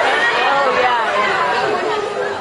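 A large audience with many voices at once, shouting and chattering over each other in a big hall.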